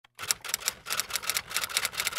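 Typing sound effect: a quick run of key clicks, about six a second.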